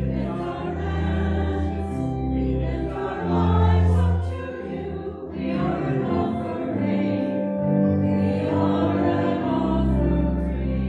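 Church music with voices singing over sustained chords and deep held bass notes.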